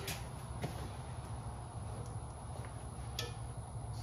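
Quiet background with a steady low hum and a faint hiss, broken by two light clicks, one about half a second in and one a little after three seconds.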